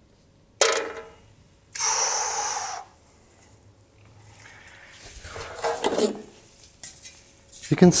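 A stiff cut-out sheet being handled against a wall: a sharp knock, then a scraping rub lasting about a second, followed by softer rustling and knocking.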